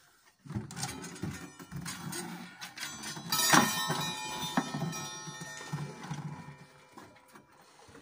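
Wooden case of an old wall clock being handled and turned on the wall: rubbing and knocking noises, with one sharp knock about three and a half seconds in that sets the clock's metal chime ringing briefly.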